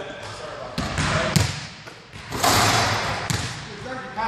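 A basketball bouncing a few times on a hardwood gym floor, sharp separate bounces with some room echo. A rush of noise fills the middle of the stretch.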